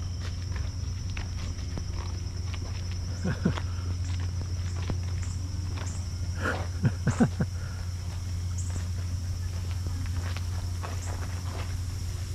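A steady low hum under a thin steady high tone, with light footsteps and scattered clicks. Two short voice-like bursts stand out, a brief one about three seconds in and a louder run of three around seven seconds.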